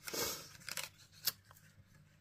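Die-cut cardstock squares being handled and laid on a craft mat: a brief rustle of paper, then a few light taps and clicks, the sharpest a little past a second in.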